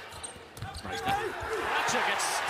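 A basketball being dribbled on a hardwood court, a low bounce about every half second, under the chatter of an arena crowd.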